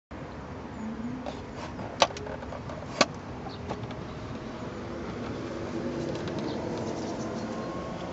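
Bullock Aero steering-wheel lock being handled and fitted over a car's steering wheel: two sharp clicks about a second apart, a couple of seconds in, then a few faint ticks, over steady background noise.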